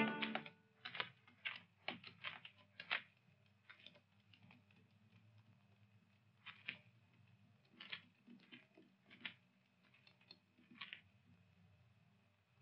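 Film score fading out in the first moment. Then faint, irregular clicks and scuffs: footsteps and movement on stony ground, in loose clusters with pauses between.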